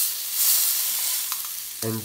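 A whole sea bass frying in hot oil in a pan, just laid in: a loud, steady sizzling hiss that swells about half a second in.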